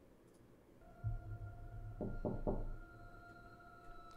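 A low, eerie drone with steady held tones swells in about a second in, then three quick knocks on a door, a quarter second apart, about two seconds in.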